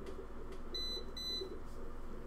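Two short, high-pitched electronic beeps about half a second apart, over a steady low hum.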